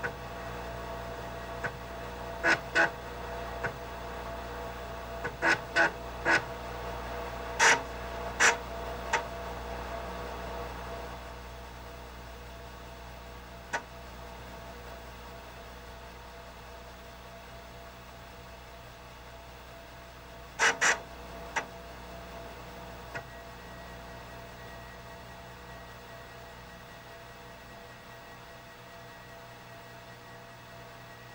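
Steady electronic hum from a computer image-analysis workstation, with sharp clicks of keys being pressed, clustered in the first ten seconds and again about two-thirds of the way in. A faint high whine joins near the end.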